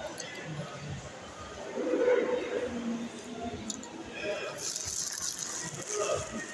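Indistinct voices in a public space, with a paper sandwich wrapper rustling for the last second or so.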